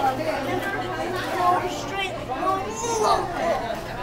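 Indistinct chatter of several people talking over one another, with a steady low hum underneath.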